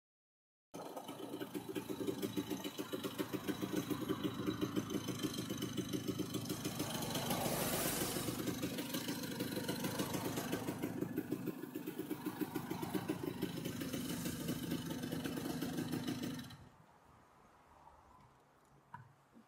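Vintage Vespa VBB's single-cylinder two-stroke engine running at low revs with an even, rapid pulsing beat as the scooter rolls in and stops, swelling briefly about halfway through. It cuts off suddenly near the end when the engine is switched off.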